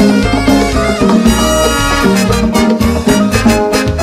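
Live band playing loud, upbeat Latin-style dance music with horns over bass and drums.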